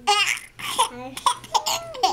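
Baby laughing in several short, high-pitched peals.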